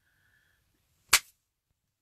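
A single sharp click or tap about a second in, against near silence.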